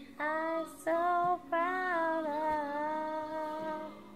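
A woman singing: two short sung notes, then one long held note with a slight waver that lasts nearly to the end.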